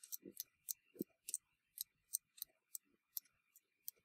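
Faint light clicks of a latch tool working loops over the metal needles and latches of a knitting machine during a latch-tool cast-on, about three a second at irregular spacing, with a couple of soft low knocks.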